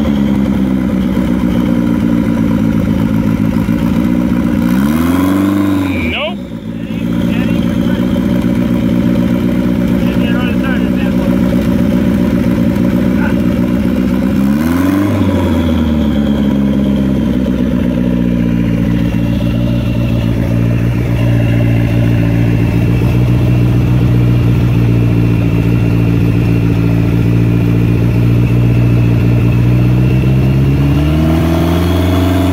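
Turbocharged four-cylinder engine of a 1987 Chrysler Conquest running at a steady idle. It is blipped up in revs and back down twice, about five seconds in and again about fifteen seconds in.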